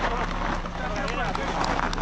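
Suzuki Jimny JB74 running at low revs as it rolls down a dirt mound, its tyres crunching and popping over loose gravel and stones, with indistinct voices of people nearby.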